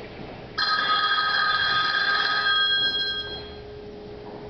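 A single bright electronic ring, like a telephone ring sound effect, starts suddenly about half a second in, holds for about two seconds and then fades away.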